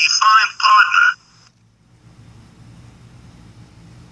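A cartoon character's voice, thin and telephone-like, speaking briefly for about the first second. After that, a faint low hum.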